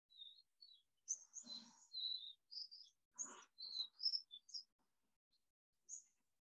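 Faint birdsong: small birds giving a string of short, high chirps.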